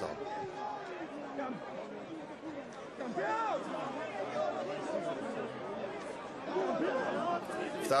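Arena crowd chatter: many voices talking and calling out at once, swelling briefly about three seconds in and again near the end.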